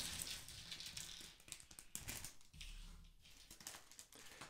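LEGO plastic pieces and a clear plastic polybag handled on a tabletop: faint crinkling and small scattered plastic clicks, busiest in the first two seconds and thinning out after.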